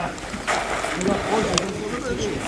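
Several people talking in the background, not close to the microphone, with a few sharp clicks in among the voices.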